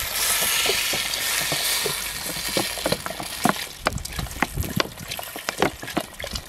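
Water poured from an upturned plastic bottle into a pot of chopped vegetables. It is a steady splashing rush for about two seconds, then breaks into uneven glugs and splashes as the bottle lets air in.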